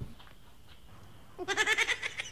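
A goat bleats once: a short, wavering call that comes in about one and a half seconds in.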